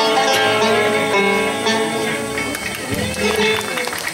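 Live bluegrass band of mandolin, acoustic guitar, banjo and upright bass playing the last notes of a song; the held final chord fades about two and a half seconds in, and voices follow.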